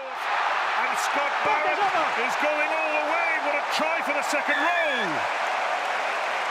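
Stadium crowd cheering a try in rugby union, a steady roar with voices rising and falling over it.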